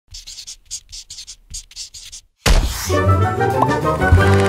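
Pencil scribbling on paper in a quick series of short strokes. After a brief pause a loud hit starts music with sustained notes.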